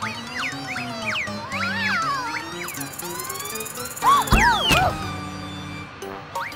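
Children's cartoon background music with springy, gliding cartoon sound effects. About four seconds in comes the loudest moment, a thump with bouncy boings.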